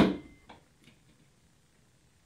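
A curved stainless steel shower curtain rod knocking once, sharply, as its end is pushed home into the metal wall flange, followed by a faint click about half a second later.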